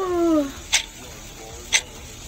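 A girl yawning aloud, her voice sliding down in pitch over about half a second. It is followed by sharp, even clicks about once a second.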